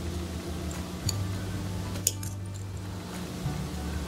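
Soft background music of low held notes. Over it are a few faint small clicks, about a second in and again about two seconds in, from long-nosed pliers closing a wire loop on a metal earring finding.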